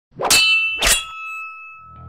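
Two sharp metallic clangs about half a second apart, each ringing on after the strike; the ring then fades over about a second. This is a logo sting sound effect.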